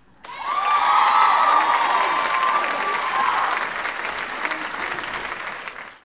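Audience applauding and cheering with whoops, breaking out a moment in and slowly fading toward the end.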